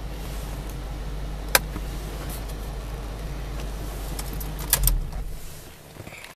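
A 2010 Ford Mustang GT's 4.6-litre V8 idling, heard as a steady low drone inside the cabin. There is a sharp click about one and a half seconds in, and a few clicks and a thump near five seconds, after which the drone fades away.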